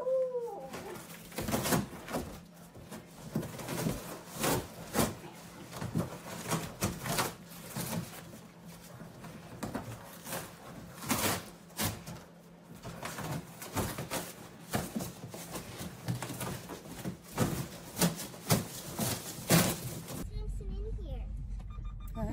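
A large dog ripping and crunching a big cardboard box: a long run of irregular tearing, crumpling and thumping of cardboard, with a brief falling voice-like sound at the very start.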